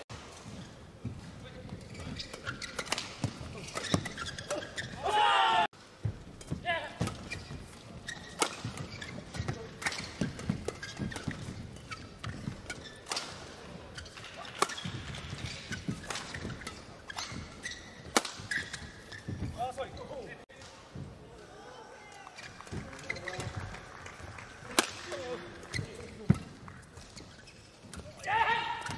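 Badminton doubles rallies: rackets striking the shuttlecock in a run of sharp cracks, about one to two seconds apart, with thuds of footwork on the court and a few short voices.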